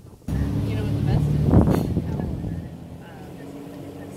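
A motor engine starts up loud just after the start, is loudest about a second and a half in, then drops to a lower steady level.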